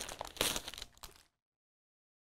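Clear plastic sleeve crinkling as a paper packet is slid out of it, stopping a little over a second in.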